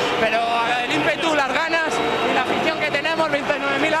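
Speech: a man talking, as in a post-match interview.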